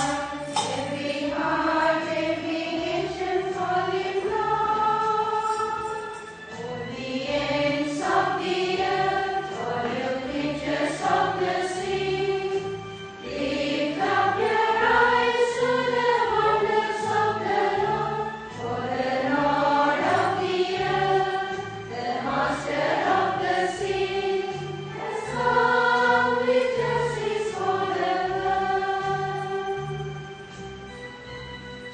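A choir singing a hymn, in phrases a few seconds long with short breaks between them.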